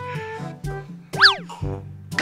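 Playful background music of short, bouncy plucked notes, with a cartoon 'boing' sound effect a little over a second in: a quick pitch that swoops up and straight back down.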